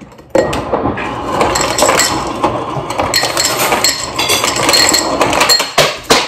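Refrigerator door ice dispenser dropping ice cubes into a drinking glass, a loud run of clattering and clinking. It starts about a third of a second in and stops just before the end.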